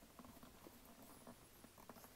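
Near silence with faint, scattered light taps and rustles of leather engineer boots being handled and set into place.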